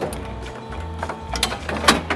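Winch motor of a cattle hoof-trimming crate whirring steadily as it hoists a cow's hind leg by a hook, stopping about a second in. Near the end come two sharp knocks, the second the loudest, as the cow kicks the leg back down against the crate.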